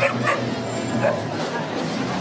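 A dog barking three short barks, over crowd chatter and music.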